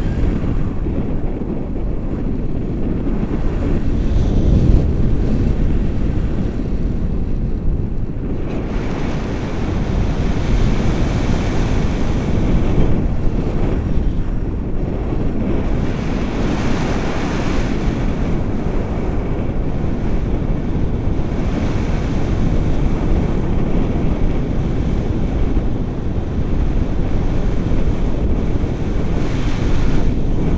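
Wind rushing over the microphone in paraglider flight: a steady low rumble of buffeting airflow, turning hissier through the middle stretch.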